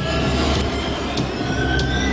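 Movie-trailer soundtrack: a deep, steady rumble under held high tones, with three sharp ticks about 0.6 seconds apart.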